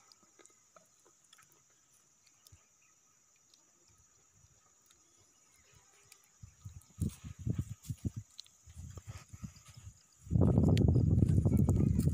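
Faint outdoor background for the first half, then irregular low thuds as the filming phone is handled and carried. From about ten seconds in, a loud low rumbling on the microphone.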